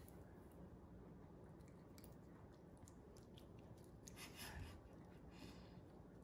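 A poodle quietly chewing a piece of soft sweet potato cake: faint, scattered small clicks, with two slightly louder soft bursts about four and five and a half seconds in.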